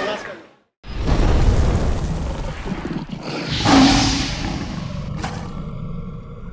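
Logo sting sound effect: the arena sound fades into a moment of silence, then a deep rumbling boom swells into a roar, loudest about four seconds in. A sharp hit comes near the end, then a fading tail.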